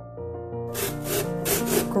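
Peeled raw potato rubbed back and forth over the perforated metal plate of a plastic hand grater: quick, repeated rasping strokes, about three to four a second, starting under a second in, over background music.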